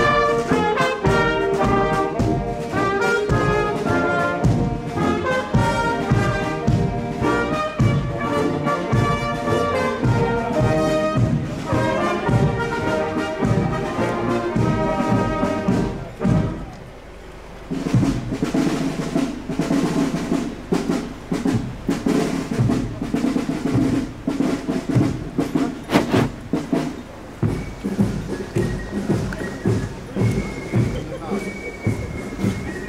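A marching brass band playing a march, with tuba, trumpets and saxophones over drums. About halfway the music dips briefly, then carries on with steadier held notes and regular drum beats.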